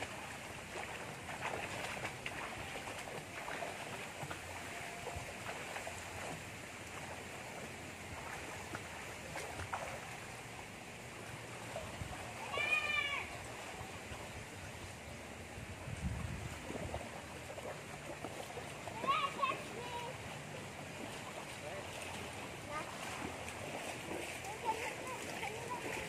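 Outdoor swimming pool ambience: a steady wash of water with light splashing from swimmers and faint distant voices. A short raised call sounds about halfway through, and a weaker one follows a few seconds later.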